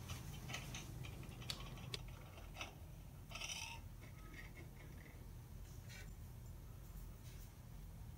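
Faint, scattered clicks and taps of chisels being shifted about on a metal table saw top, with a short scrape about three and a half seconds in, over a low steady hum.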